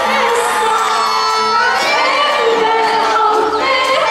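Live band playing with a woman singing into a microphone, over a crowd of audience voices cheering and singing along.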